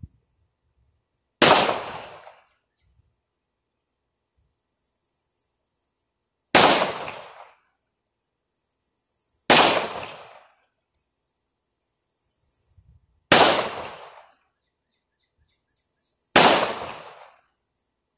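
Five single shots from a .45 firearm, spaced about three to five seconds apart, each sharp report trailing off over about a second.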